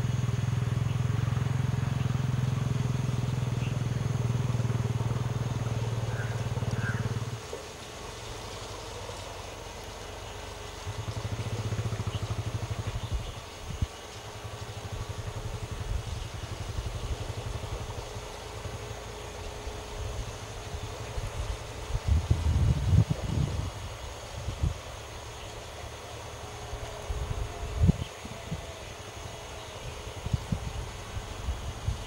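A vehicle engine idling steadily, cutting off about seven seconds in. After that a weaker low hum comes and goes, with a few knocks near the end.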